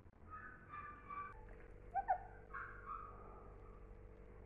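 A puppy whining in short, high-pitched calls, with a louder yelp about two seconds in, as it begs for play.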